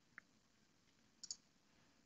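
Near silence: room tone with two faint, short clicks, one about a quarter second in and a quick double click a little past a second in.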